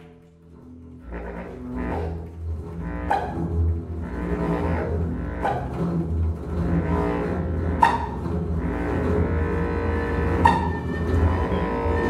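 Free improvised ensemble music swelling in over the first two seconds. A double bass holds low sustained notes, a tabla adds a few sharp, widely spaced strokes, and a long transverse flute holds tones above.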